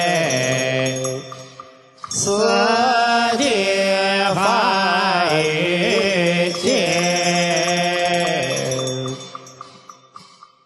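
Chinese Buddhist monastic voices chanting liturgy in the fanbai style: long, drawn-out melodic notes that bend in pitch. There is a brief break about two seconds in, and the chanting fades away near the end.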